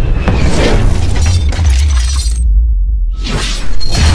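Logo-reveal sound design: a sudden loud shattering burst over a deep bass music bed. The highs drop out a little past two seconds, then a second shattering burst comes about three seconds in.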